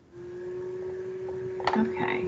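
A steady electrical-sounding hum on a single tone comes in just after the start and holds, with a click and a brief bit of noise near the end.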